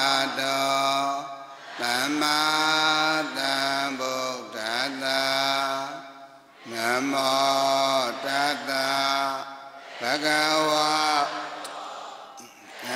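A man's voice chanting Buddhist Pali verses in long, drawn-out melodic phrases, with short pauses for breath between them.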